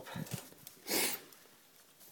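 A single short sniff, a quick breath drawn through the nose, about a second in; otherwise only faint handling noise.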